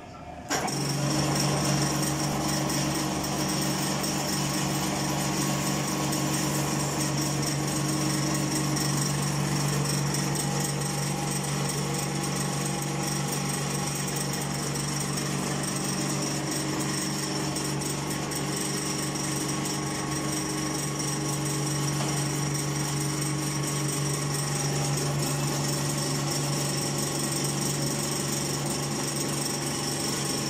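Three-roll pipe bending roller, driven by a small electric motor through a worm gearbox, running steadily as its rolls curl a steel tube into a ring. It gives a steady hum with a high-pitched whine, starting about half a second in.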